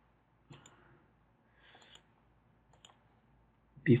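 A few faint computer mouse clicks, one about half a second in and another near three seconds in.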